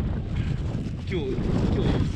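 Wind buffeting the microphone, a steady low rumble, with faint voices in the background about a second in.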